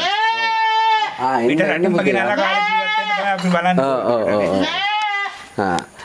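Goat bleating three times: long, wavering, high-pitched calls about a second apart.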